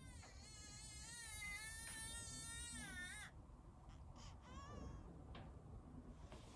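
A baby crying faintly: one long wavering wail of about three seconds, then a short second cry a little after four seconds in.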